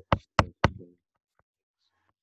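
Three sharp taps about a quarter second apart, a stylus striking a drawing tablet while writing, then quiet.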